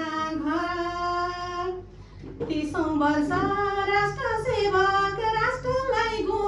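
A woman singing unaccompanied into a microphone, holding long notes that slide between pitches, with a brief break about two seconds in.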